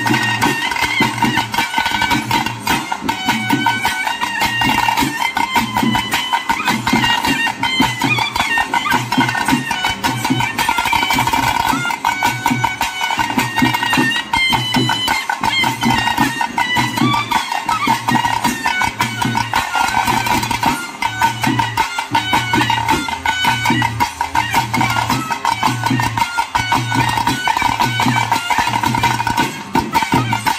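Nadaswara playing a film-song melody over a steady drone tone, with thase stick drums and a dhol beating a steady rhythm underneath.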